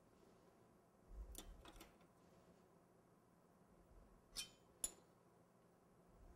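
Near silence broken by a few faint clicks of small decorating tools against the work surface, the two sharpest clinks coming about halfway through.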